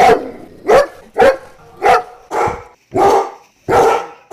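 Dog barking repeatedly, about seven sharp barks a little over half a second apart.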